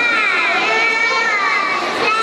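A young child's high voice speaking into a handheld microphone, amplified over loudspeakers, the pitch gliding in long, smooth, sing-song curves.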